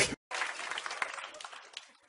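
A song cuts off abruptly at the very start, then a studio audience applauds faintly, dying away just before the end.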